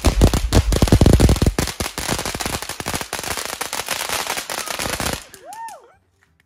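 Fireworks going off in a rapid, dense run of sharp cracks and pops that stops about five seconds in.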